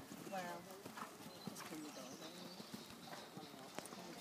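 Hoofbeats of a ridden horse trotting on a sand arena, under low voices of people talking nearby.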